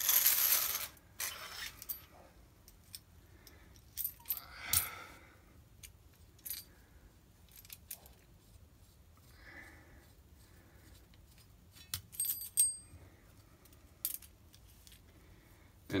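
Metal lightsaber hilt sections being slid off a threaded rod and set down: a scraping rasp in the first second, then scattered light metallic clicks and taps, a few with a brief high ring about twelve seconds in.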